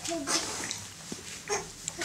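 A baby making short babbling vocal sounds, one near the start and another about one and a half seconds in.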